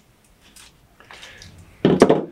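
Faint rustling and handling noises from a coil of thick copper bonsai wire being handled, followed by a sudden louder sound near the end.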